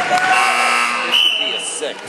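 Spectators shouting in a gym, with a steady electronic scoreboard buzzer sounding about a second in and lasting under a second, which ends the wrestling period.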